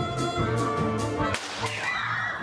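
Live pit band playing brassy, upbeat music with a steady beat, cut off abruptly about one and a half seconds in by a sharp crack and a sweeping whoosh: the stage effect of the factory's machinery being stopped.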